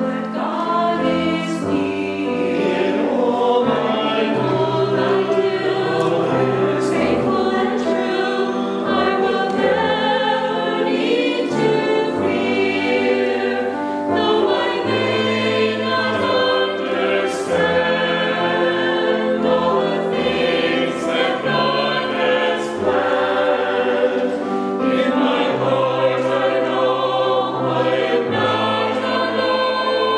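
Mixed church choir of men and women singing together in sustained phrases.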